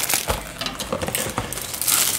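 A foil Pop-Tarts wrapper crinkling as it is handled, in a run of short irregular crackles.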